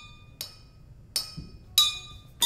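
Water-filled drinking glasses of a homemade water xylophone tapped with a spoon: a faint clink, then two sharp clinks about half a second apart near the middle and end, each ringing out as a clear note. Each glass's pitch is set by its water level, less water giving a higher note.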